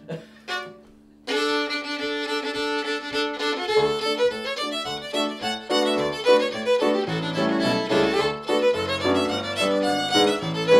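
A fiddle tune in D on the violin with digital piano chords and bass notes underneath, starting about a second in after a couple of short sounds.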